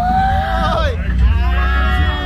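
High voices calling out in long drawn-out tones, one held for about a second and others rising and falling after it, over the deep, steady rumble of a 3D motion-simulator dark ride.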